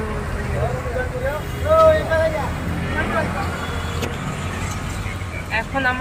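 Auto-rickshaw running along the road, heard from inside the cabin as a steady low rumble of engine and road noise, with faint voices over it.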